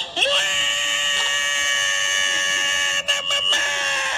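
A long, high-pitched held note with several overtones. It swoops up at its start and holds steady in pitch for about three seconds, breaks up briefly just after three seconds, then holds again.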